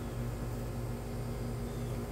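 Steady background hum with an even hiss, like a running fan or appliance, with no distinct event over it.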